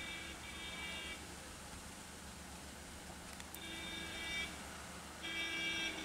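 A faint, steady pitched buzzing in four short bursts of half a second to a second each, two near the start and two in the second half, over a low steady hiss.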